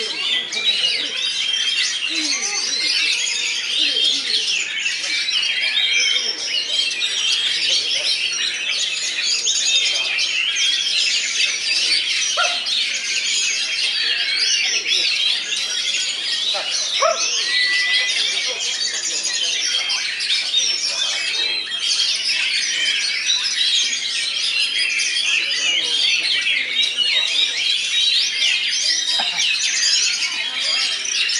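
Many caged oriental magpie-robins singing at once: a dense, unbroken chorus of quick, overlapping warbling phrases, with faint voices of people underneath.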